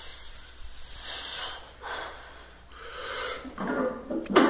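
A powerlifter taking about four sharp, hissing breaths, about a second apart, while bracing over the barbell before a heavy sumo deadlift pull.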